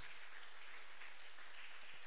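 Congregation applauding, a steady even patter with no single claps standing out.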